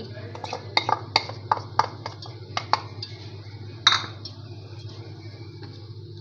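A ceramic bowl and a wooden spatula knocking and clinking against a wok as oil is poured in and stirred: about eight sharp knocks in the first four seconds, the loudest near four seconds, over a steady low hum.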